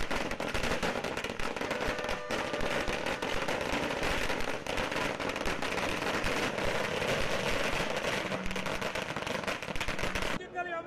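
A long string of firecrackers going off, the bangs following one another so fast that they run together into one continuous crackling rattle.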